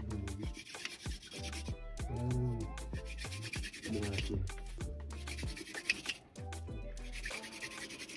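Wooden fire drill grinding into a wooden hearth board in repeated scraping strokes, the friction building heat to make an ember. Background music plays throughout.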